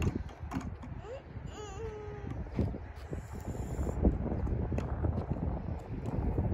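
Hard plastic wheels of a toddler's low-slung plastic tricycle rumbling and knocking over a concrete driveway. A young child's short whining vocalization comes about a second and a half in.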